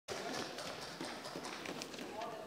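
Low background sound of a large parliamentary chamber: a faint murmur of voices with scattered light knocks and rustles.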